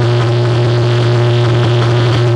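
Live electronic noise music played loud through the PA: a steady, unbroken low drone with a few held higher tones and a dense wash of noise above it.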